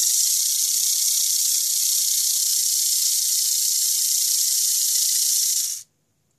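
Tamiya Mini 4WD electric motor spinning a custom gear train (34-tooth spur gear driven through a 14T/24T counter gear, 7.29:1 ratio) at full speed off the ground, a loud, steady, high-pitched hissing whir of motor and gear teeth. It cuts off suddenly near the end.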